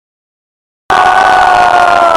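Dead silence for almost a second where the recording cuts, then loud, distorted concert sound from a phone in the crowd: one long held note over crowd noise.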